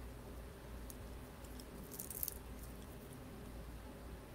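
Faint clicks and light rattles of a small quadcopter canopy being handled and pressed onto the frame, with a short cluster of clicks about two seconds in.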